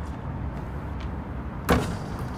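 A basketball bouncing on an outdoor hard court: a light bounce about a second in, then a louder hit with a short ring near the end, over a steady low background rumble.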